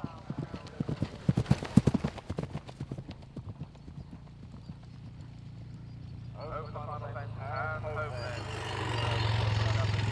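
Hoofbeats of a horse galloping on turf, a fast run of thuds that grows loud as the horse passes close, peaking about two seconds in, then fades away within about three and a half seconds.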